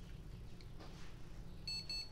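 A PC speaker on a Gigabyte H61 motherboard starts beeping near the end, a rapid high-pitched repeating beep. It is the board's RAM error beep code, a sign that the salvaged board still powers on even with some components removed.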